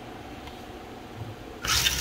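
Faint steady background hum, then a short whirr of about half a second near the end: the small electric motors of a radio-controlled toy car on their first test run after conversion.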